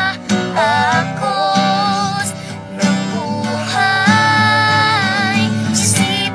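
A boy singing a melody with long held notes, with an acoustic guitar strummed along.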